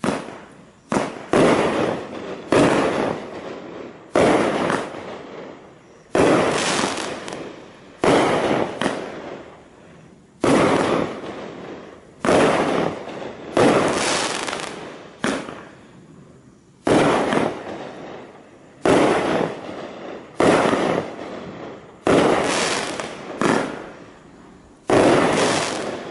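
A 16-shot consumer fireworks cake firing: sharp shots one after another, about one to two seconds apart, each followed by a fading crackle from the crackling stars.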